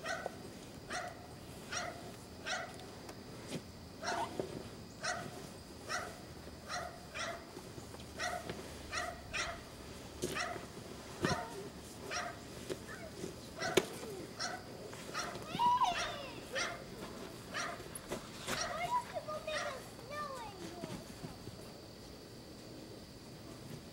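A small dog barking over and over at a steady pace, about two barks a second, fairly faint.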